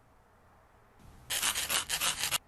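Eraser rubbing quickly back and forth across a board in a run of short scraping strokes, starting a little past halfway through after near silence.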